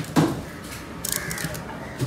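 A large knife chops through tuna into a wooden block once, just after the start, then a crow caws once about a second in.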